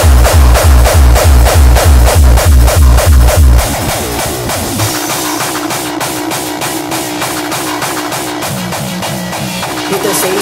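Hardcore electronic dance music from a DJ mix: a heavy kick drum pounds a fast beat, then drops out about a third of the way in, leaving a quieter breakdown of synth lines without the kick.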